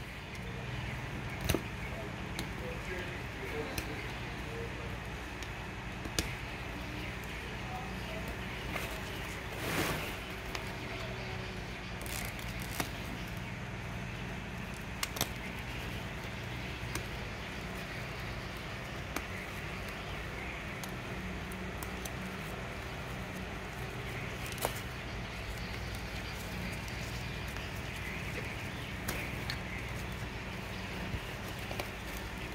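Seam ripper cutting the stitches of a sail slider's webbing strap, with the sailcloth being handled: scattered small clicks and snips over a steady low background hum.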